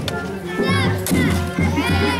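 High-pitched voices of young children calling out over a children's drum band playing, its low drums beating about twice a second.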